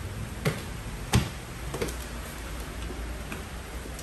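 Footsteps in flip-flops going down wooden stairs: three sharp steps about two-thirds of a second apart in the first two seconds, the second the loudest, then only faint taps.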